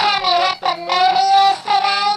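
A high-pitched voice singing a few drawn-out notes, the longest held about a second.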